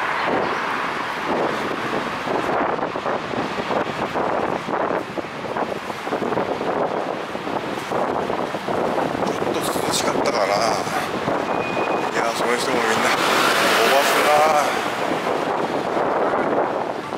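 Busy city street ambience: steady traffic noise with passers-by talking, the voices loudest near the end.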